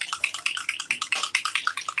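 Small bottle of alcohol ink being shaken hard, a rapid run of liquid-and-bottle rattles at about ten a second that stops abruptly.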